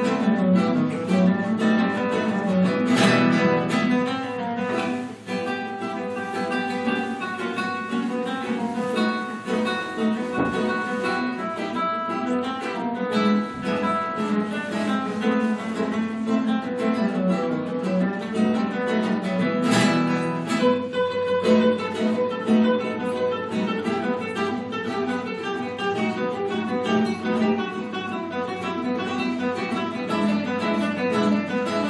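Acoustic guitar music playing steadily, a quick run of plucked notes.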